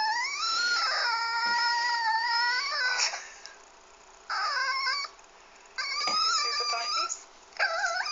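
Toy poodle whining and crying, played back from a video through laptop speakers. A long high cry rises in pitch and holds for about three seconds, followed by two shorter cries.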